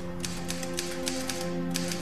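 Manual typewriter being typed on: a quick, uneven run of key clacks, over background music with long held notes.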